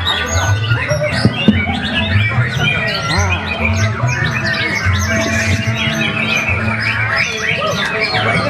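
Several caged white-rumped shamas (murai batu) singing at once, a dense, overlapping tangle of whistles, chirps and squawks, over background music with a steady low bass.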